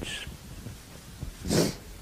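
A man's short, sharp breath drawn in, heard once about one and a half seconds in, just before he speaks again, over faint room tone.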